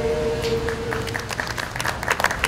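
A small group's singing ends on a long held note, and scattered hand-clapping starts about half a second in, growing into applause from a small crowd.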